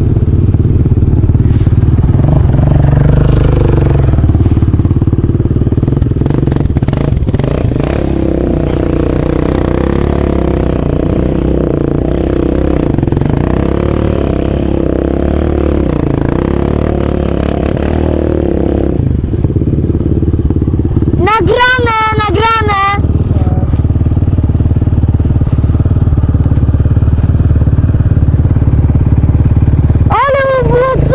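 Off-road vehicle engine running under way over a dirt track, loud and steady, with wind on the microphone; about 19 s in the engine eases back to a lower steady idle. A brief wavering, high tone comes about 21 s in.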